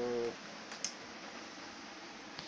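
A drawn-out spoken "so" trails off, then steady low background hiss. Two faint, sharp clicks come close together a little under a second in.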